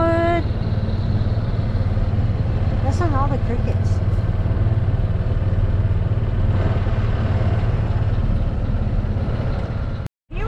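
Golf cart driving along a road, a steady low rumble of the moving cart running throughout. Short bits of voice come just at the start and again about three seconds in.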